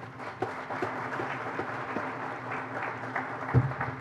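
Seated audience applauding, many hands clapping steadily, with a brief low thump near the end.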